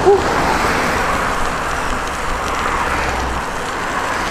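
Steady road and wind noise of a bicycle riding fast on studded tyres over wet, slushy pavement, with a car passing close alongside at the start. A short 'woo' is voiced at the very beginning.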